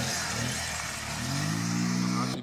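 A motor vehicle engine running under a steady hiss, its pitch rising through the second half as it revs up.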